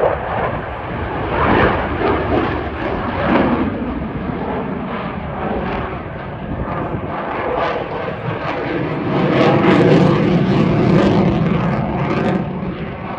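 F-16 fighter jet's engine at high power during a display manoeuvre: a dense rushing roar with a rough crackle, swelling louder from about nine seconds in.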